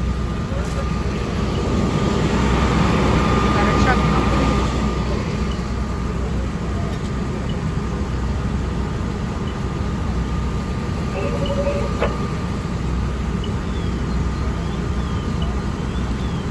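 Fire engine's diesel engine and pump running steadily: a low rumble with a faint steady tone above it, under the voices of firefighters.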